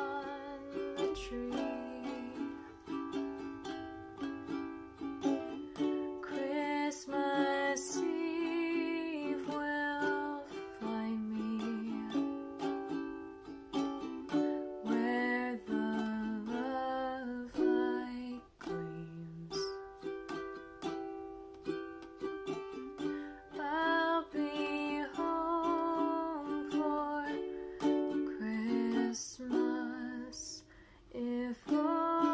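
Ukulele strummed in chords, accompanying a woman's singing voice.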